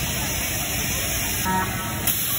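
Steady loud rumble and hiss of running fairground ride machinery, with a short pitched sound about one and a half seconds in.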